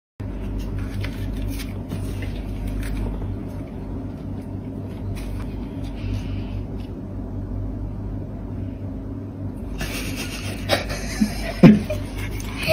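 A kitten purring steadily in a low, pulsing rumble close to the microphone. From about ten seconds in, rustling and clicking from handling join the purr, with one loud bump near the end.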